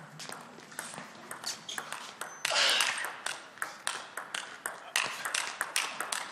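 Table tennis rally: the ball clicks sharply and irregularly, several times a second, as it strikes the rackets and the table in turn.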